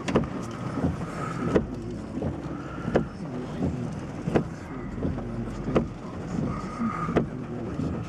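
Inside a car's cabin in the rain: the car running with a low steady hum, and scattered sharp taps of raindrops hitting the roof and windows.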